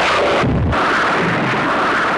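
Rocket launch: a loud, steady rushing blast of rocket exhaust as the rocket lifts off its pad, with a deeper rumble about half a second in.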